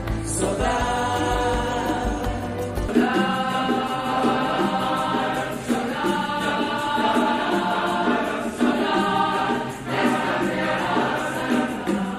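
Music with a choir of voices singing held chords. A deep bass drops out about three seconds in.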